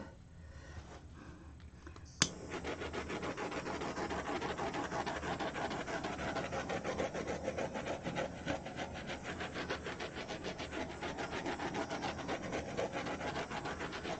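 Handheld butane torch lit with a sharp click about two seconds in, then its flame hissing steadily with a fine rapid flutter for about eleven seconds as it is passed over wet acrylic pour paint to pop surface bubbles.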